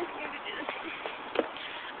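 Quiet outdoor background hiss with faint voices and a single faint knock about one and a half seconds in.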